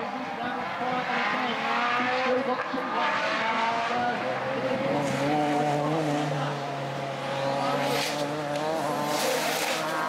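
Rallycross cars racing round a circuit: several engines revving at once, their pitch rising and falling through gear changes. A louder hissing rush comes near the end.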